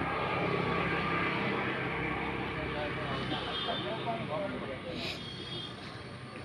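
A steady engine drone that slowly fades over the last few seconds, with faint voices of people in the background and one sharp click about five seconds in.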